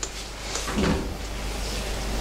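A few light knocks and a dull thud of objects being handled, like something set down or moved about on a table, over a steady room hum.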